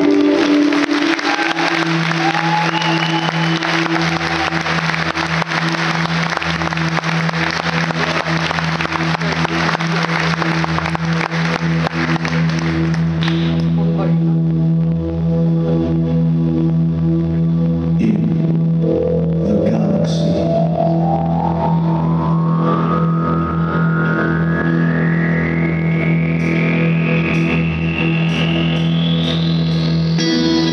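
Live band playing a spacey electronic interlude: a steady low drone with a loud hissing wash over it that ends about 13 seconds in, then a long tone sweeping steadily upward in pitch from about 18 seconds to the end.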